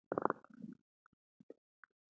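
A bloated human stomach gurgling: a burst of rumbling gurgles at the start, then a few small, faint pops and squeaks. The belly is bloated with gas from Mentos.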